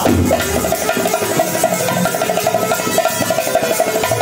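Haryanvi ragni accompaniment: a harmonium playing a fast run of repeated notes over dholak and nakkara drums.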